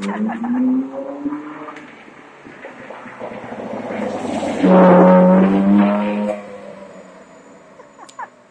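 Ferrari 458 Italia's 4.5-litre V8 driving past: the engine note rises in pitch in the first second, swells to its loudest with a steady low tone about five seconds in as the car passes close, then fades as it pulls away.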